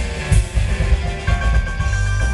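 Country band playing live, with electric guitar and a drum kit over a heavy, boomy low end, recorded from close to the stage. A high note is held steadily from a little over a second in.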